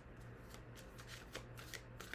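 A tarot deck being shuffled by hand: a faint, irregular run of soft card flicks and snaps.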